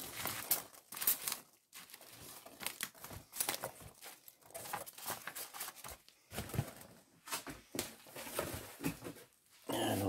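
Hands rummaging through packing peanuts in a cardboard shipping box: irregular rustling and crinkling in short spurts, with brief pauses between them.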